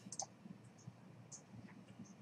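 Faint computer mouse clicks over near silence: a quick pair at the start and a single click a little past the middle.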